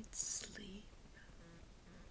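A woman speaking softly, close to a whisper: a hissing consonant about a quarter second in and a few quiet syllables that trail off within the first second, then faint room tone.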